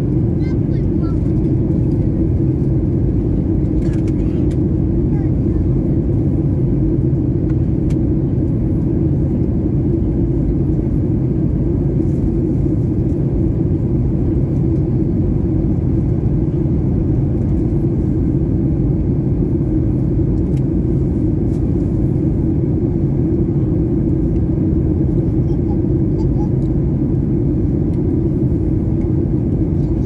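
Steady, loud cabin noise of a Boeing 737-8 airliner in flight, heard from a window seat: a deep rumble of the engines and the airflow over the fuselage.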